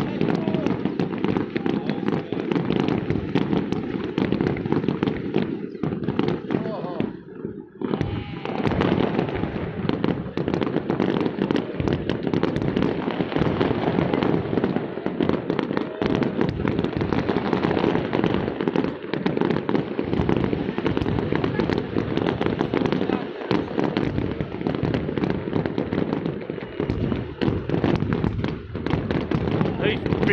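Aerial fireworks shells bursting in a dense, continuous run of overlapping bangs and crackle, with a short lull about seven seconds in.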